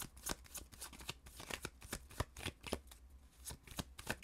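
A tarot deck being shuffled by hand: a run of short, uneven card clicks and slaps.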